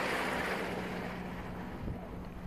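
A van driving past close by, its engine and tyre noise fading as it moves away.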